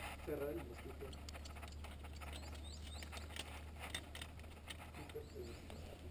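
Faint scattered clicks and scrapes of a climber's hands and metal climbing gear against the rock, over a steady low hum, with a faint voice briefly near the start and again near the end.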